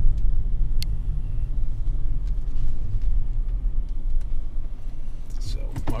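Steady low rumble of a car being driven, heard from inside the cabin, with a single sharp click about a second in.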